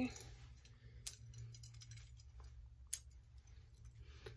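A beaded necklace being handled and fastened, with two sharp clicks of beads and clasp, about a second and three seconds in, over a faint low hum.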